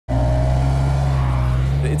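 Maserati Ghibli's V6 engine running loud and steady, its note rising slowly as the revs climb.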